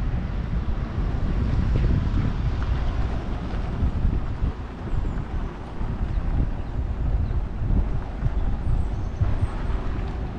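Low, gusty rumble of wind buffeting the microphone, swelling and dipping unevenly, over a faint outdoor city background.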